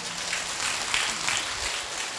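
A large seated audience applauding, many people clapping their hands together.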